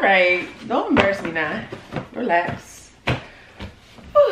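A woman's voice making short untranscribed vocal sounds, mostly in the first half, with a few sharp knocks from cardboard shoe boxes being handled and set down, about a second in and near three seconds.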